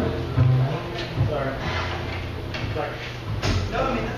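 Upright bass plucking a few low notes with a few light drum or cymbal hits, under people talking.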